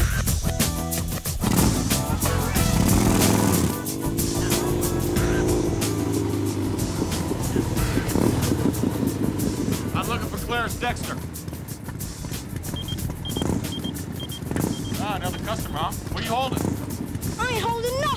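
A chopper motorcycle's engine runs and revs, swelling from about two seconds in and easing off a few seconds later, mixed with background music and street noise. In the second half, short rising-and-falling chirps and a brief run of high beeps come through.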